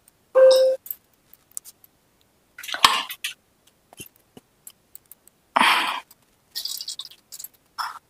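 A few separate clinks and knocks of metal kitchen utensils and containers, with one sharp knock about three seconds in and gaps of silence between.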